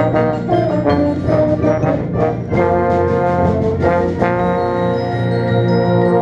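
Bass trombone playing close up within a full concert band of brass and other instruments. It plays short detached notes for the first couple of seconds, then long held chords.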